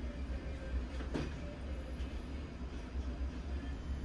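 Steady low rumble of background room noise, with one faint knock about a second in.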